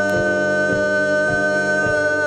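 Live South Asian fusion band music: a woman's voice holds one long note over keyboards and bass, with a kick drum beating about every half second.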